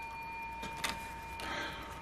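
Faint handling sounds of a paper scratch ticket and a scraper on a wooden table. There is a single light click a little under a second in, then a soft rustle, over a faint steady high hum.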